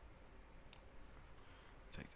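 Near silence: faint room tone with a couple of soft computer-mouse clicks, one about two-thirds of a second in and a fainter one around the middle.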